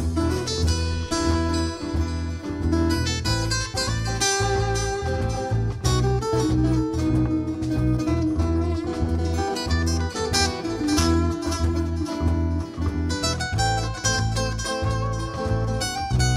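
Live band playing an instrumental break with no vocals: acoustic and electric guitars over bass guitar and drums.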